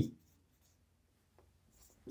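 Marker pen writing on a whiteboard: faint strokes, with one short scratch about one and a half seconds in.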